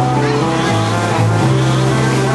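Loud live noise-rock band playing a dense, droning mix of saxophones, bass and drums. Held bass notes shift pitch every half second or so under a wash of distorted sound.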